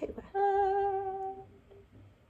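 A woman humming one steady held note with a slight waver, lasting about a second.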